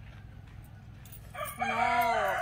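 A rooster crowing: a loud, drawn-out call that starts suddenly about one and a half seconds in, after a quiet stretch.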